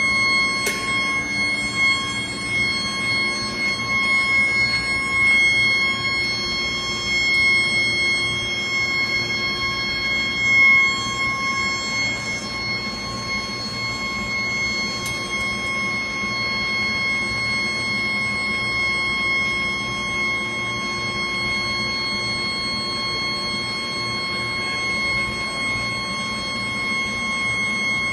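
Induction furnace melting ductile iron, giving off a steady high-pitched whine with a fainter tone an octave above, over a low shop hum. A few faint clicks sound through it.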